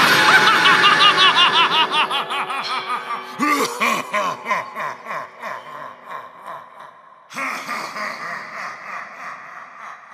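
Spirit Halloween Fright in the Box animatronic clown's recorded cackling laugh, a rapid run of 'ha-ha' after it pops out of its box. It comes in three bursts: the first and loudest at the start, another about three and a half seconds in, and a third about seven seconds in, each fading away.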